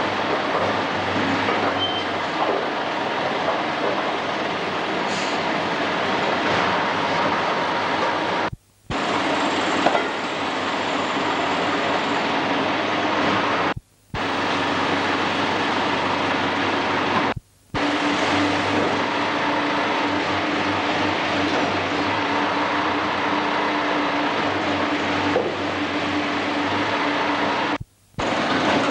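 Loader tractor's engine running steadily at close range, a constant mechanical drone, cut off for an instant three times.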